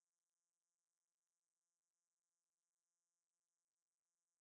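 Silence: the recording carries no audible sound.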